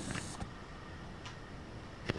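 Quiet room with a few faint, light clicks, about three spread across two seconds.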